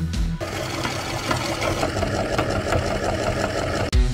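Dry, crumbly bar soap breaking apart and crumbling in the hands, a dense crackling made of many fine rapid ticks lasting about three seconds, over background music.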